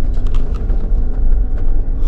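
Jeep engine and drivetrain running steadily at crawling speed in four-low, heard inside the cab: a low rumble with a faint steady hum and small rattles.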